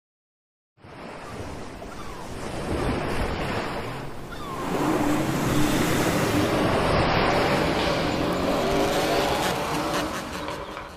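Noisy intro of a hip-hop track: a rushing sound starts about a second in and swells over several seconds, with faint steady tones joining halfway through.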